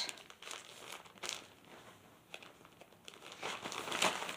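Clear plastic garment packaging crinkling off and on as hands open it and pull out a folded top.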